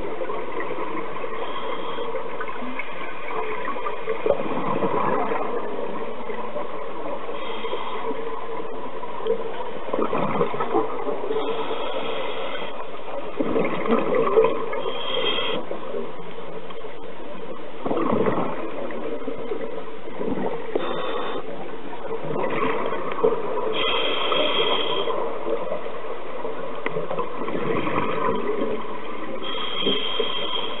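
Scuba regulator breathing heard underwater: exhaled bubbles gurgle in bursts every four to five seconds over a steady hum, with a brief hiss between them.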